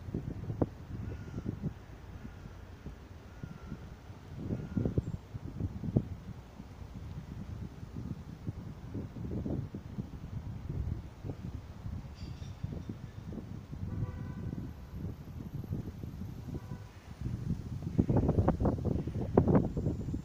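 Wind buffeting a handheld phone's microphone in irregular gusts over the steady sound of city street traffic. The gusts are loudest near the end.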